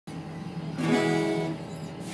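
Acoustic guitar: a single chord strummed a little under a second in, ringing and fading over a steady low hum.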